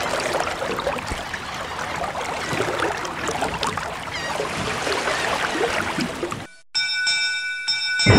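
Water splashing and trickling, with many small splashes. It cuts off suddenly near the end, and a ringing bell-like tone with several steady pitches follows.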